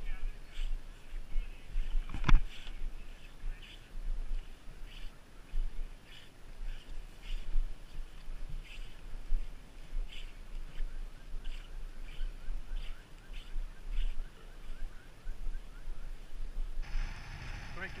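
Boots crunching up a packed snow bootpack, a step about every two-thirds of a second, with hard breathing from climbing at about 13,000 ft. One louder knock comes about two seconds in.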